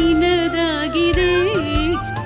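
A woman singing a Kannada devotional song over instrumental accompaniment with a low bass line, holding long, wavering notes.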